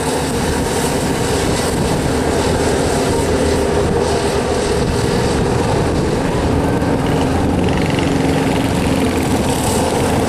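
Several racing karts' small engines running together at speed, a continuous overlapping buzz that shifts slightly in pitch as the karts go around the track.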